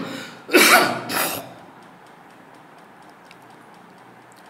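A man coughing, a short run of harsh coughs in the first second and a half, then only faint room hiss.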